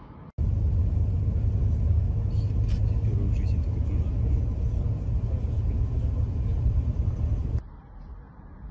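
Deep, steady rumble of a large fuel-tank fire burning close up, starting and stopping abruptly with the cuts to and from the close-up footage.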